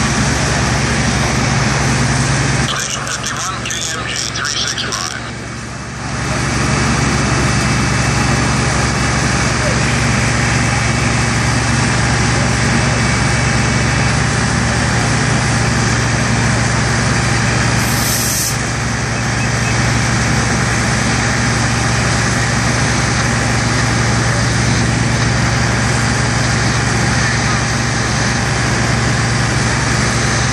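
Fire engine's diesel engine running steadily with a constant low hum. The noise drops for about three seconds near the start, then comes back.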